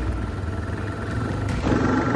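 Motorcycle engine running steadily while riding.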